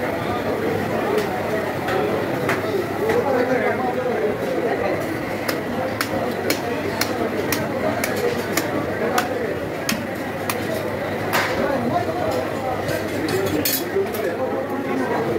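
Many voices chattering in a busy meat market, with irregular sharp knocks of meat being chopped with cleavers on wooden blocks, more frequent in the second half.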